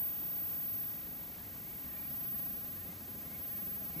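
Faint, steady background noise, a low rumble with light hiss, and no distinct sound event.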